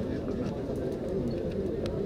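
Many men's voices chanting together in a continuous low murmur, the sound of a Vedic mantra recitation around a fire ritual.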